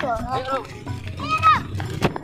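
Voices over background music: a short spoken word at the start and a brief high-pitched call about a second and a half in.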